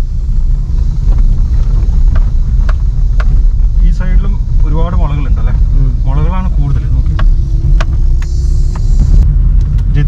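Inside a moving Suzuki car: a steady low rumble of engine and road noise, with scattered light clicks and knocks.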